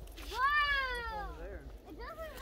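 A child's long drawn-out "whoa" of amazement, about a second long, rising and then slowly falling in pitch.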